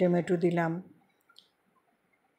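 A voice speaking for under a second, then near silence with one faint click.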